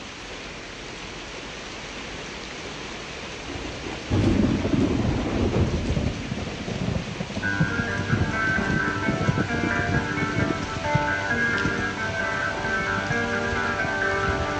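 Steady rain, joined about four seconds in by a long rumble of thunder; about halfway through, sustained music notes come in over the storm, as in the storm-effect opening of a song.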